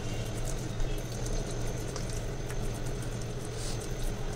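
Steady low hum of kitchen room noise, with faint scattered ticks and soft handling sounds as raw fish fillets are coated on a plate.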